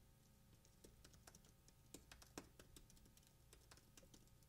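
Faint computer keyboard typing: a scattered run of soft key clicks over near silence, the clearest about two and a half seconds in.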